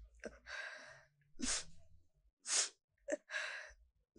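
A woman crying: a run of short, sharp sobbing breaths, about one a second.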